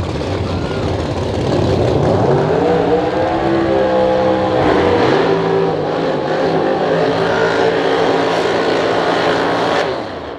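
Drag race cars' engines revving up and held at high revs through burnouts, tyres spinning. One engine climbs in pitch about two seconds in, a second joins with its own rise about five seconds in, and both hold a steady high note until it cuts off at the end.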